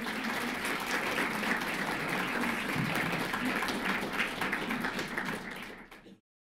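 Audience applauding, fading away near the end.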